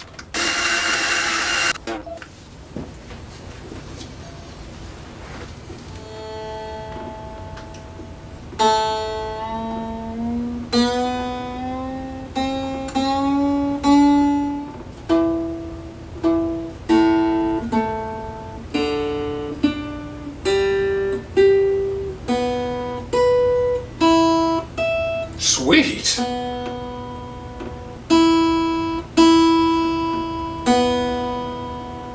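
A vintage Japanese Toledo (Aria) 335-style semi-hollow guitar being tuned after restringing: single strings plucked one at a time, each note ringing and dying away, with one note sliding slowly upward in pitch as its tuning peg is turned. A brief burst of hiss comes near the start.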